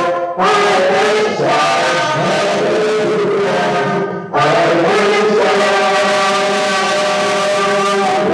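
A man's voice chanting a church hymn in long held notes, in phrases broken by short breaths just after the start and about four seconds in.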